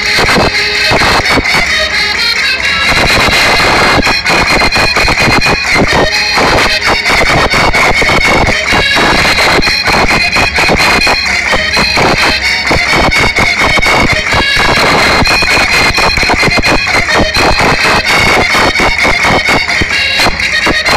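Portuguese folk dance music played loud, with a held high reedy note running through it over quick, busy percussion.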